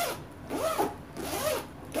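Handbag zipper being run back and forth in about five quick pulls, each stroke rising and then falling in pitch as the slider speeds up and slows. The zipper runs freely, closing easily.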